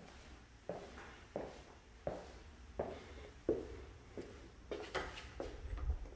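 Footsteps on a hard plank floor in an empty room, a steady walk of about one and a half steps a second that quickens into a few closer steps near the end.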